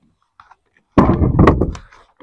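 A cluster of loud, dull thuds and knocks on a wooden boat, starting about a second in and dying away within a second, as a fishing line and its catch are hauled aboard by hand.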